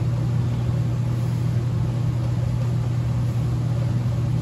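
A steady low mechanical hum with a faint hiss over it, unchanging throughout.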